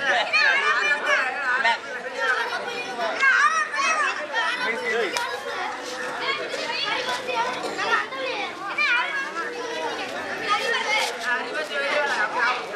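Crowd of children chattering and calling out at once, many high voices overlapping in a continuous babble.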